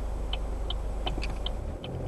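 Car's turn-signal indicator clicking steadily, about three clicks a second, over the low hum of the engine idling.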